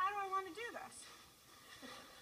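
A single long, meow-like animal call in the first second, holding one pitch and then bending up and down at its end.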